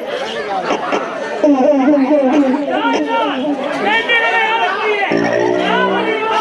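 Several loud, overlapping voices of therukoothu performers, their pitch rising and falling in sweeping contours. About five seconds in, a held harmonium chord comes in under them.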